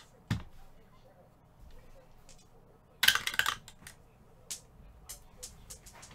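Handling noises: a sharp knock just after the start, a loud half-second scrape or rustle about three seconds in, then scattered light clicks.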